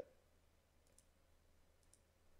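Near silence broken by faint computer mouse clicks, about a second in and again near the end.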